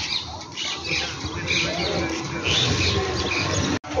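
Birds chirping and squawking in repeated short calls over a steady low background rumble.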